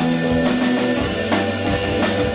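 A rock band playing live: electric guitars holding sustained, ringing chords over bass and a drum kit keeping a steady beat, with no singing. The bass note drops lower about a second in.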